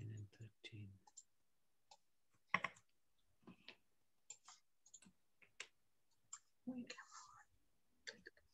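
Near silence on a video-call line, broken by faint, scattered clicks of a computer mouse as a shared document is zoomed. A brief low murmur comes at the start and another near the end.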